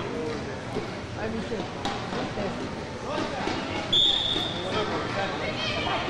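Crowd noise and scattered voices in a wrestling hall, with a short, high whistle blast about four seconds in.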